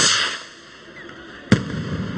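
Two festival rockets (cohetes) going off, about a second and a half apart: a loud bang at the start that dies away, then a sharp, echoing crack. In the Pamplona bull run these rockets signal that all the bulls have entered the bullring and then that they are all shut in the corrals.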